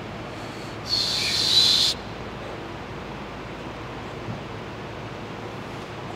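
A hiss lasting about a second, starting about a second in, with a thin high whistling tone running through it, over a steady low room hum.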